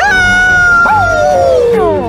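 Cartoon dog howling: one long, loud, held note that slides down in pitch over the second half.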